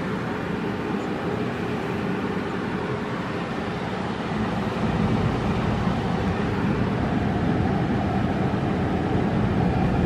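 Ford Econoline van's engine idling, a steady low hum heard inside the cabin, getting slightly louder about halfway through.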